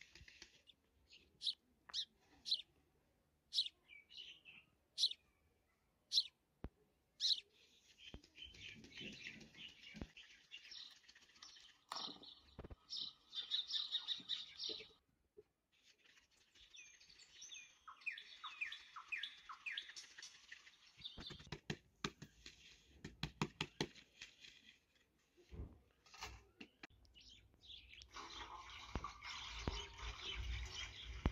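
Small birds chirping and twittering: short separate high chirps at first, then longer runs of rapid song. In the second half, a run of quick, light taps.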